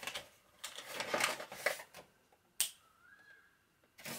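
Brown paper bag rustling and crinkling as hands rummage inside it, followed by a single sharp click about two and a half seconds in.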